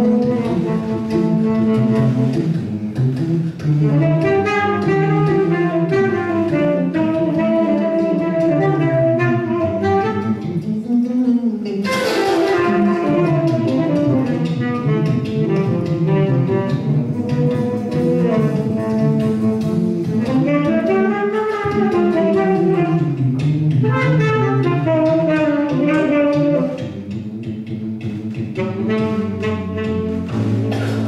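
Live small-combo jazz: a saxophone plays a flowing melodic line over walking upright double bass, acoustic guitar and drums, with a cymbal crash about twelve seconds in. The band gets quieter near the end.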